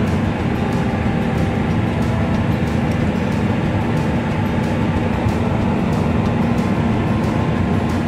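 Steady running noise of a vehicle heard from inside its cab as it rolls slowly, with a constant low hum from the engine and tyres.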